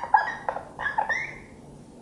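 A marker squeaking on a whiteboard as letters are handwritten: a run of short high squeaks and scratchy strokes, dying down near the end.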